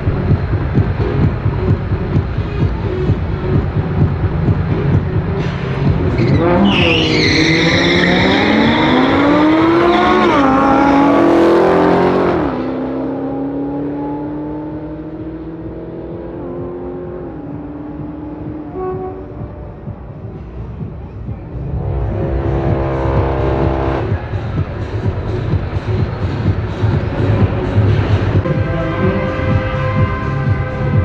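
An Audi R8 V10 and a Dodge Challenger launching in a quarter-mile drag race about six seconds in. The engines climb steeply in pitch, dip at a gear change and climb again, then drop off suddenly near the twelve-second mark and fade with a falling pitch as the cars run away down the track.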